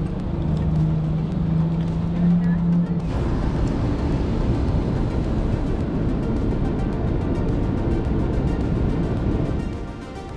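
Motorcycle V-twin engine idling with a steady, pulsing rumble, under background music. The sound changes abruptly about three seconds in.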